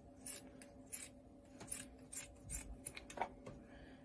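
Scissors snipping through folded layers of polar fleece: a faint series of short, irregular snips, roughly three a second.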